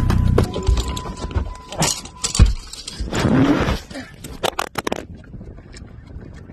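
Handling noise of a phone being moved about inside a car: irregular knocks, rubs and scrapes against the phone body. A low rumble fills the first half second and fades, and the noise drops away about five seconds in.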